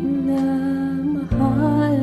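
A woman singing a slow karaoke ballad over a backing track, holding two long notes; the second begins about a second and a third in.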